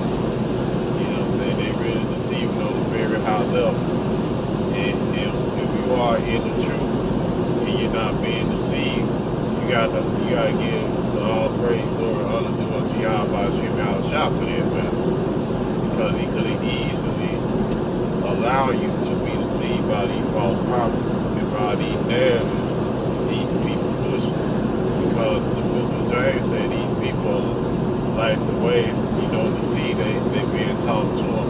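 Steady road and engine noise inside a moving car's cabin at highway speed, with a man's voice talking over it.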